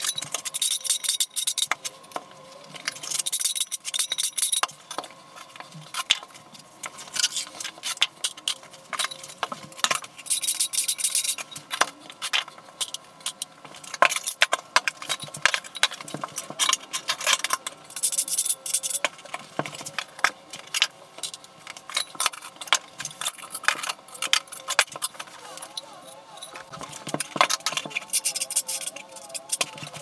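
Tile-setting work played back sped up: a steel notched trowel scraping and combing thinset in several rasping strokes, amid many quick clicks and knocks of tiles, plastic spacers and tools.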